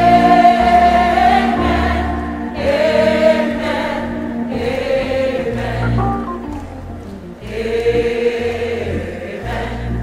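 Large choir singing with live orchestral accompaniment, in long held notes that fall into about four phrases of two to three seconds each.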